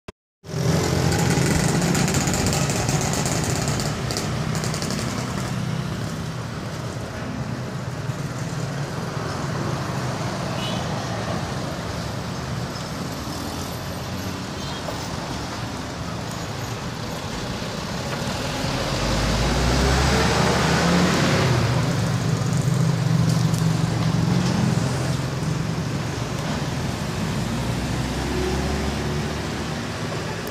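Road traffic: motorcycles and cars passing one after another, engines running steadily. One vehicle passes louder about two-thirds of the way in.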